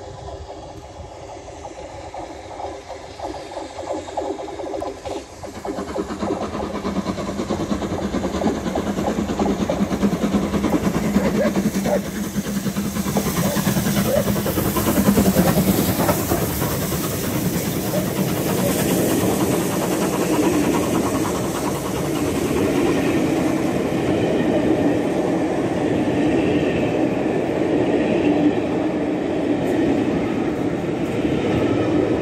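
LMS Jubilee class three-cylinder 4-6-0 steam locomotive 45596 Bahamas approaching and passing at speed, growing louder until it is loudest as the engine goes by about halfway through, with a hiss of steam. After that comes the steady rolling and clickety-clack of its coaches.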